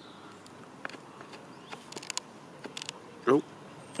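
Dog chewing on a wooden stick: scattered quiet cracks and crunches of the wood as it gnaws, at irregular intervals.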